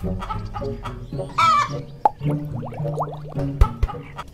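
Cartoon chicken sound effects: a loud squawk about a second in and clucking, over orchestral background music.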